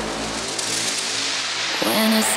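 Melodic techno track in a breakdown: the bass drops out about half a second in and a hissing noise sweep fills the gap, with a falling pitch glide near the end.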